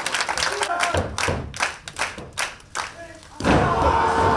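Audience clapping in an even rhythm, about four claps a second, while the wrestlers are down. Near the end a loud thud of a body landing on the wrestling ring's canvas.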